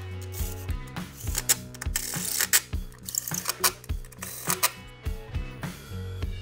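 Hand ratchet with a T-40 bit clicking in short, irregular bursts as bolts are tightened, over background music.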